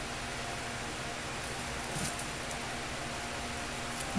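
Room tone in a pause between words: a steady hiss with a faint hum, and a brief soft sound about two seconds in.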